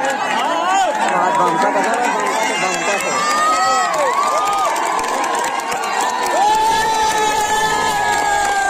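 Spectators at an outdoor kabaddi match shouting and cheering during a raid, many voices overlapping, with a few long held calls near the end.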